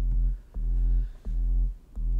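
Bass line playing back as about three deep, separate notes with short gaps between them, processed through Logic Pro's Phat FX plugin with distortion, a doubler-style mod effect and a bass enhancer for a round, widened tone.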